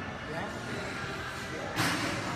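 Busy gym ambience: a steady murmur of voices and room noise, with one sharp impact near the end.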